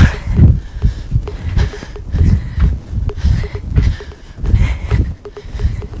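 Sneakered feet thudding on an exercise mat over a wooden floor during side-to-side squats, a steady rhythm of deep thuds about two a second.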